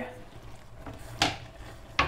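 Wooden spoon stirring macaroni and grated cheese in a pot, with a short scrape about a second in and a sharp knock of the spoon near the end.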